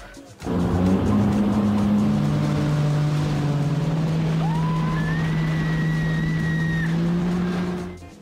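Jet ski engine running steadily under way, a loud drone that steps down slightly in pitch about two seconds in. A high, drawn-out squeal rises over it in the middle.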